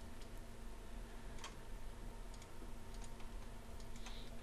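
A few faint computer mouse clicks, the clearest about a third of the way in and a few softer ones after the midpoint, over a faint steady hum.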